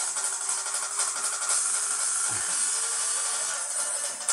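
Music with jingling hand percussion and a long held note.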